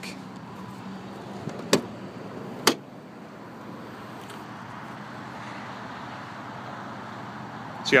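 Two sharp clicks about a second apart as the rear tailgate of a 1999 Toyota 4Runner is unlatched and opened, over a steady low background noise.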